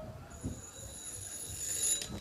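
Telephone ringing: one long, high-pitched ring that starts a moment in and grows louder.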